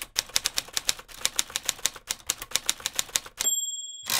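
Typewriter sound effect: a fast, even run of keystroke clacks, about seven a second, then the carriage bell dings once near the end.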